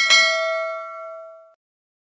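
Notification-bell chime sound effect from a subscribe-button animation: a click, then a single bright bell ding that rings and fades out over about a second and a half.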